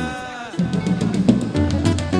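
Live band music: a sung note trails off at the start, then a drum kit plays a fill of rapid snare and bass drum hits.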